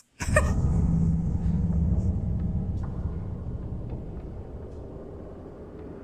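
Deep, low rumble in a horror trailer's soundtrack, starting abruptly with a hit and slowly fading away.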